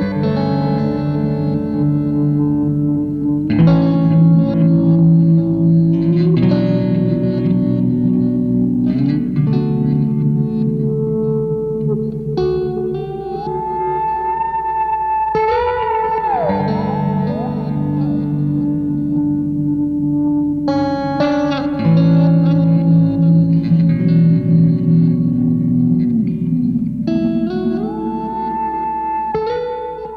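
Ibanez YY10 electric guitar playing ringing chords through a Hologram Microcosm in granular Haze mode and an Avalanche Run in reverse mode, building a repeating ambient wash with long echoes. Twice, about halfway through and again near the end, a held high feedback tone from a Digitech FreakOut swells in, then drops away in pitch.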